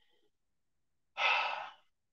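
A person's single breathy sigh, a heavy exhale lasting under a second, about a second in.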